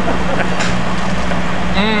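A steady low engine hum runs under an even wash of open-air noise.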